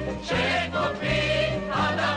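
A song sung by a group of voices over a band, with a bouncing bass line changing notes about twice a second, in the style of a 1960s–70s Israeli army entertainment troupe.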